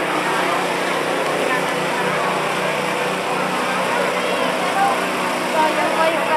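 Steady hum of a small engine running, under the murmur of a crowd's voices, with a few clearer voices near the end.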